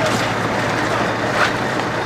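Heavy vehicle engine running steadily with a low hum, from the police water cannon truck standing close by, with one brief sharp knock about one and a half seconds in.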